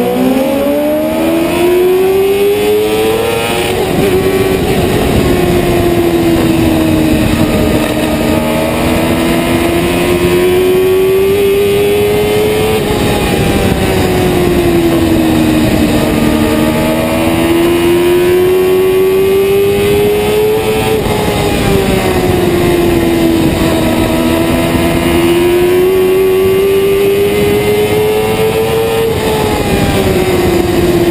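A small oval-track race car's engine heard from on board at racing speed: its pitch climbs steadily down each straight and drops sharply as the driver lifts for the turns, about four times, over wind and vibration rumble.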